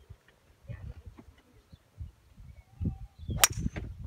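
A golf driver's club face striking a golf ball off the tee: a single sharp crack about three and a half seconds in.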